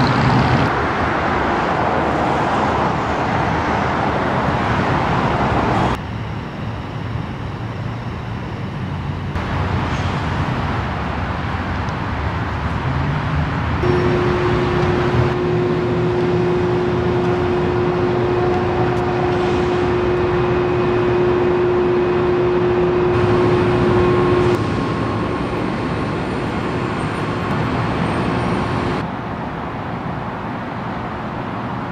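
Downtown street ambience of road traffic, a continuous wash of passing cars, which changes abruptly several times as the shots cut. A steady hum holds for about ten seconds in the middle.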